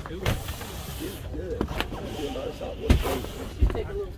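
A few dull thumps and knocks as a person climbs into the back of a camper van onto the bed, the loudest about three seconds in, over faint crowd chatter.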